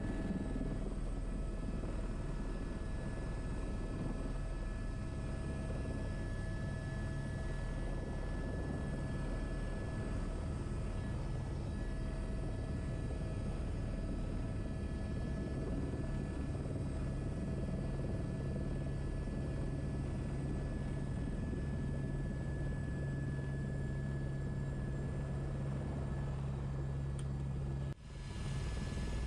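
Airbus H125 helicopter heard from inside the cockpit during its descent to a landing: a steady rotor and turbine drone with a thin, constant whine over it, unchanging throughout.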